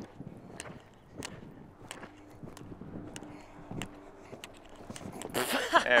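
Hoofbeats of a cantering horse on a sand arena surface, a run of irregular thuds and clicks, with a man's voice coming in near the end.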